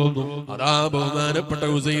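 A man's voice chanting religious recitation in a melodic, sing-song delivery, holding long pitched notes, with a brief pause about half a second in.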